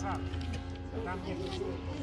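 Faint speech over a steady low hum, in a lull between louder commentary.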